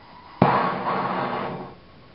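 MAPP gas blow torch lighting with a sudden pop, its flame then hissing loudly for about a second before dying down.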